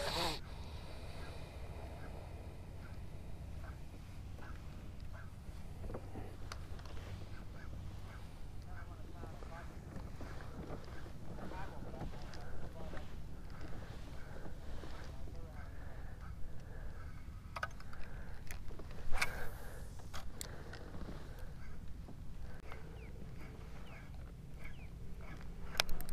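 Spinning reel being wound to retrieve a cast lure, with light handling clicks over a low wind rumble on the microphone. There is one louder, brief rush about three quarters of the way through.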